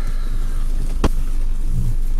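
Steady low rumble of a car heard from inside the cabin, with a single sharp click about a second in.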